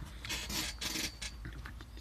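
A few short scratchy rubs, strongest in the first second, as fingers handle a small model covered in stiff painted camo netting.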